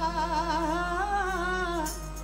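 A woman's voice singing Sikh kirtan, holding long notes with a slow, wavering pitch, over a steady harmonium tone.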